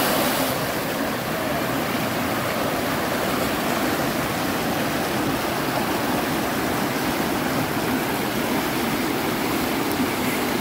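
Fast, shallow creek water rushing over rocks and boulders, a steady wash of noise.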